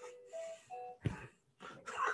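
A phone's musical ringtone, faint, playing a few short single notes that step up in pitch, followed by a short noise about a second in.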